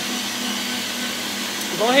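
Steady whirring of a running motor with a low hum beneath it, holding an even level throughout.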